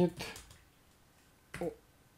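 A few quiet computer keyboard keystrokes as a short line of text is typed. They come between the tail of a spoken word at the start and a brief voiced syllable near the end.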